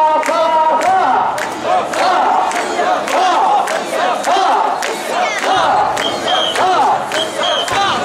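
Many mikoshi carriers shouting a rhythmic chant together as they shoulder the portable shrine. A short high whistle blast sounds twice near the end.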